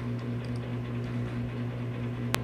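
Steady low hum of room background, with no other distinct sound.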